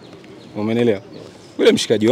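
A man's voice in a pause between answers: a short, low, drawn-out hesitation sound about half a second in, then talk starting up again near the end.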